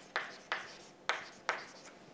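Chalk writing by hand on a chalkboard: about four short, sharp chalk strokes, each tapping and scraping briefly against the board.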